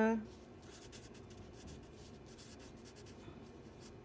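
Felt-tip marker writing on paper: faint, quick, irregular pen strokes as words are written out by hand.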